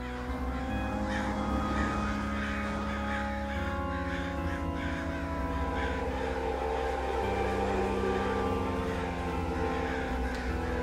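Dark psytrance music: sustained synth chords that change about every three and a half seconds over a continuous low bass.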